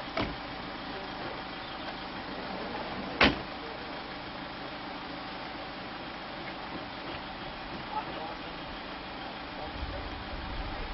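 Two sharp thumps about three seconds apart, the second much louder, over a steady outdoor background hiss.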